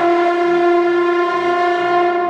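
French horn holding one long, steady note, attacked at the start, with soft piano accompaniment pulsing underneath.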